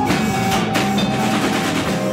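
A live rock band playing: a drum kit with snare and cymbal hits driving over sustained keyboard and guitar tones, loud and dense.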